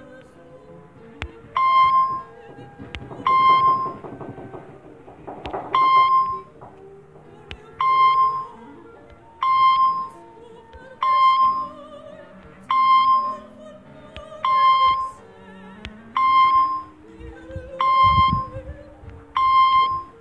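A quiz app's short electronic beep for a correct answer, one bright pitched tone repeated about eleven times, roughly every second and a half to two seconds. Quiet background music plays underneath.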